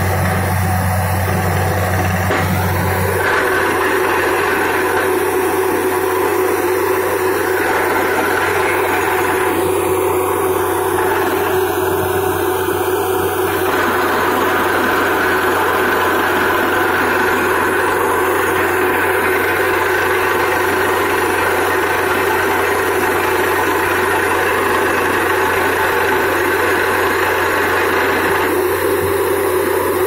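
Truck-mounted borewell drilling rig running steadily under load while it drills, as muddy water and rock cuttings blow out of the borehole. A deep hum underneath drops away about three seconds in.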